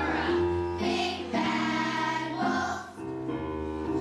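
A children's chorus singing a song together, with instrumental accompaniment underneath.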